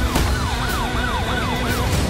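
Police siren yelping, its pitch sweeping quickly up and down about three times a second.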